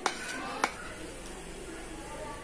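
A metal fork clinking twice against a ceramic plate, the two clinks a little over half a second apart near the start, with faint talk or music in the background.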